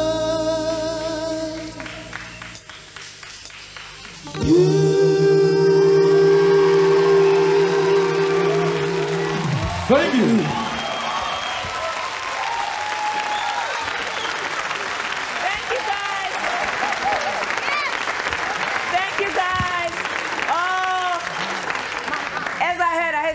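Male vocal group singing in harmony, ending on a long held final note that drops off near the middle. Then a studio audience applauds and cheers.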